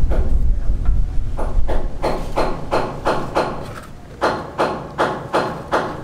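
Hand hammer striking repeatedly in quick, even blows, about three a second, in two runs with a short pause between them. A low rumble fills the first second or two.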